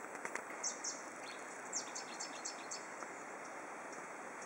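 Small birds chirping: a quick series of short, high calls that slide down in pitch during the first three seconds, over a steady background hiss.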